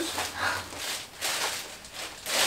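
Plastic courier mailer bag rustling and crinkling as it is handled open and a plastic-wrapped item is pulled out: several short rustles.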